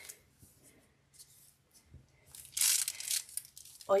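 Crinkly rustling of a piping bag being handled and squeezed, faint at first, then a louder rustle for most of a second past halfway.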